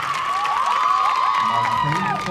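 A group of women's voices shrieking and cheering together in excitement, several high held squeals overlapping, over crowd cheering. It is a team's delighted reaction to its marks as they come up.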